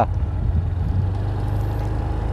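Steady low rumble of a motorcycle being ridden, with wind buffeting the microphone.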